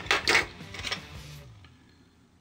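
Clicks and light knocks of a folding knife's handle and metal parts being handled on a wooden desk during reassembly: a quick cluster in the first half second, a few more, then dying away about halfway through.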